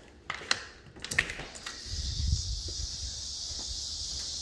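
Clicks of a lever door handle and latch as a back door is opened, then a steady high insect chorus comes in from outside, with a low rumble about two seconds in.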